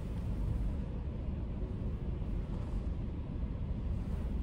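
Steady low rumble of a running car heard from inside its cabin as it is eased into a parking space.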